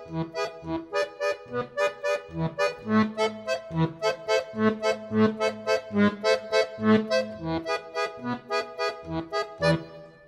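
Weltmeister piano accordion playing an instrumental passage: pulsing chords, about four to five strokes a second, over low bass notes.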